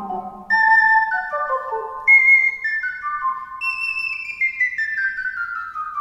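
Two ocarinas playing fast descending scale runs in parallel, in pure, flute-like tones. Three runs begin about half a second, two seconds and three and a half seconds in, each starting higher than the last.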